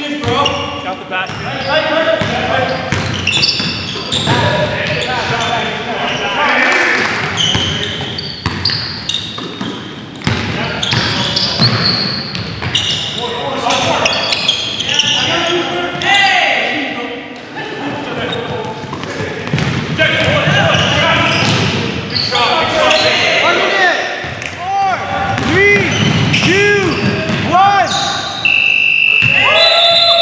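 Basketball game on a hardwood gym floor: a ball bouncing, sneakers squeaking and players' indistinct voices echoing around a large hall. A short high held tone sounds near the end.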